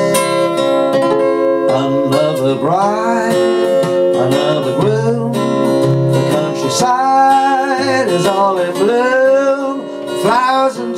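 Acoustic guitar strummed, with a man singing over it in several phrases.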